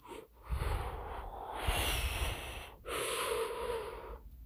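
A person blowing or breathing hard close to the microphone. It is a long breathy rush of about two seconds with a low rumble, then a shorter one after a brief break.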